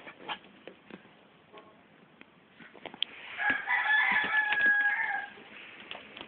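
A rooster crowing once, a single drawn-out call of about two seconds starting about three seconds in, over light scuffling and small clicks from a puppy moving about on bedding.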